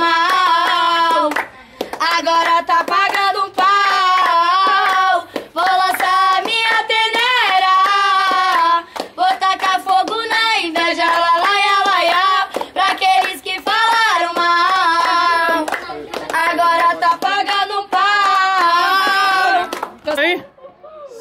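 Two girls singing a song together without accompaniment, in phrases with short breaths between, with hand claps keeping the beat.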